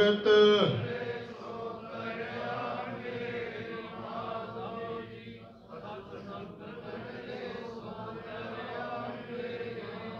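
Sikh devotional chanting (simran): a loud chanted line at the microphone ends about a second in, and softer, steady chanting carries on after it.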